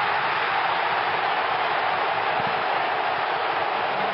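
Large stadium crowd cheering a goal, a dense steady roar of voices with no commentary over it.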